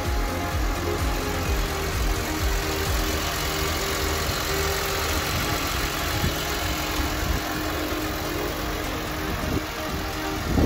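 The E46 M3's 3.2-litre inline-six engine idling steadily, under background music.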